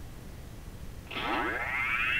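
Cartoon sci-fi door opening: a synthesized whine that starts about a second in and sweeps steadily upward in pitch.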